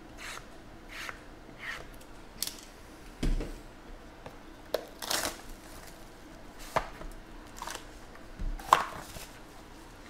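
Hands handling sealed cardboard trading-card boxes: a run of short scraping strokes across the box stack, a dull thump about three seconds in, then crinkling plastic shrink wrap and sharp clicks and snaps as a box is unwrapped, the loudest snap near the end.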